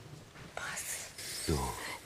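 A quiet pause in a room, with a faint breathy whisper about half a second in, then a single spoken "So." near the end.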